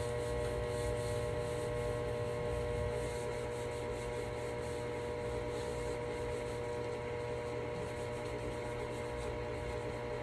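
Cloth rag rubbing over a wooden cabinet, wiping on wood stain, over a steady electrical hum.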